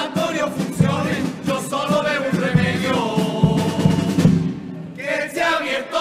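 Male chirigota group singing together in Spanish, backed by Spanish guitars and a steady drum beat. The voices drop away briefly about four and a half seconds in, then come back in.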